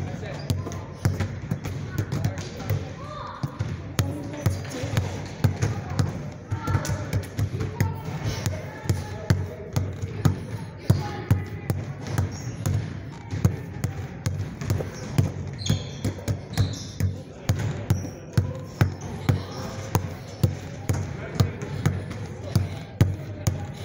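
A basketball dribbled hard in a fast crossover drill, about two sharp bounces a second in a steady rhythm.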